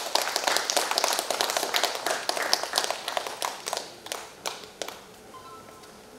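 Audience clapping, a scattered round of applause that thins out and dies away about five seconds in.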